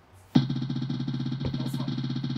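Prize-wheel spinner app playing its spinning sound: a looped electronic tone with a fast, even pulse of about a dozen beats a second, starting suddenly about a third of a second in.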